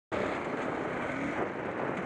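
KTM 690 Enduro R's single-cylinder engine running while riding, under a steady rush of wind on the bike-mounted action camera's microphone.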